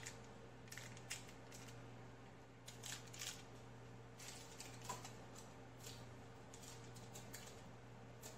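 Faint, scattered crinkles and light ticks from aluminium foil and chicken wings being handled in a foil-lined pan, over a low steady hum.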